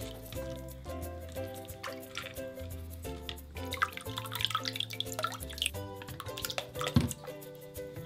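Background music over water dripping and splashing from a wire-mesh strainer of soaked flakes being pressed by hand in a sink of water, the drips thicker in the middle of the stretch.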